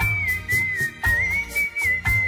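A person whistling a Hindi film song melody, one clear, lightly wavering line with small ornaments, over an instrumental backing track with a steady beat.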